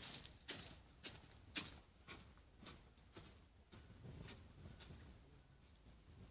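Footsteps on wet, muddy grass, walking away at about two steps a second and growing fainter.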